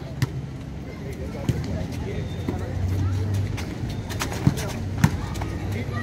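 Outdoor crowd of spectators chattering around an ecuavoley court, with a few sharp slaps spaced through it and a low hum partway through.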